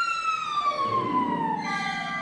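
Orchestral music in which a high instrument slides steadily down in pitch in one long glide, falling about an octave. Lower sustained orchestral notes join about a second in.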